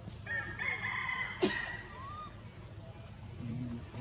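A rooster crowing once, the crow lasting a little over a second and ending with a sharp click. Small birds chirp again and again in the background.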